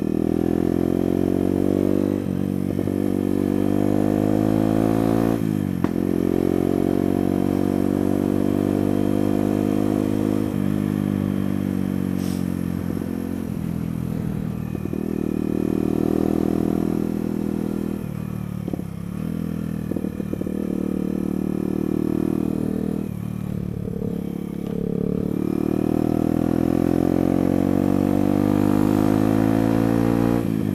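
A Sinnis Blade trail motorcycle's engine running under way, heard from the rider's helmet. Its pitch rises under throttle and falls back several times as the rider shifts gear and eases off on the lane, with one brief sharp knock about six seconds in.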